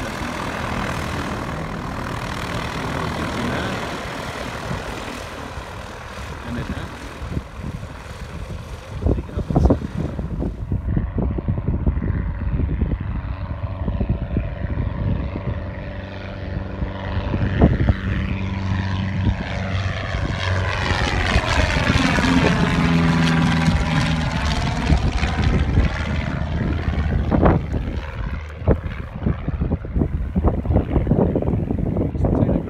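Light propeller airplane's piston engine running steadily as it flies past low over the runway. It grows loudest about two-thirds of the way through with a sweeping rise and fall in tone as it goes by.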